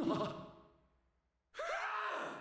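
Two short cries from an anime character's voice: an exclaimed "What?" at the start that fades within about half a second, then a shout of "Fran!" about a second and a half in, with dead silence between them.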